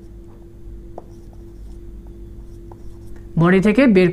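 A whiteboard marker writing on a whiteboard: faint scratchy strokes with a few small taps, over a low steady hum. A man starts speaking near the end.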